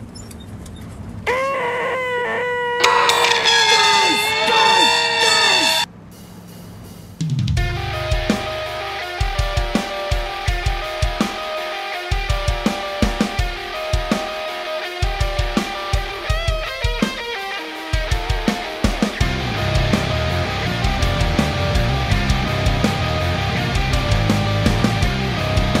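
A man's drawn-out, high, nasal vocal screech, about four seconds long, put on as the most annoying sound in the world. After a second's gap, a hard rock track comes in about seven seconds in: a driving drum kit with a steady pounding kick drum and cymbals under distorted electric guitar.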